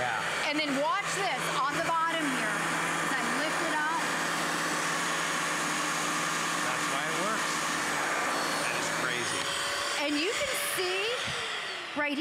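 Hoover Power Path Pro Advanced upright carpet cleaner running on carpet, a steady motor whir with a low hum. It shuts off about nine seconds in.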